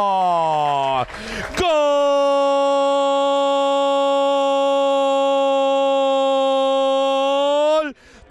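A football commentator's long drawn-out goal cry, "gooool". The held shout falls in pitch, breaks for a quick breath about a second in, then holds one long steady note for about six seconds before dropping away just before the end.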